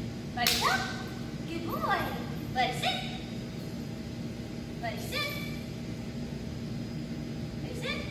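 Young beagle mix giving a series of short barks that rise in pitch, about five, spaced irregularly across the few seconds. This is the excessive vocalising his owners complain of.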